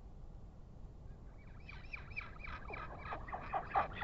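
Royal albatross chick calling: a fast run of short notes, about five a second, each falling in pitch, starting about a second in and growing louder toward the end.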